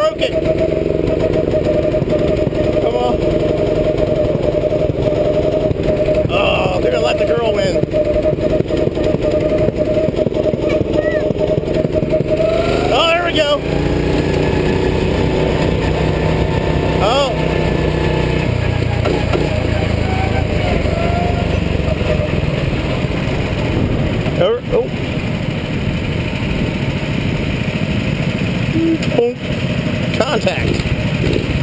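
Go-kart engine running steadily at speed, heard from onboard the kart; its steady note shifts lower a little under halfway through.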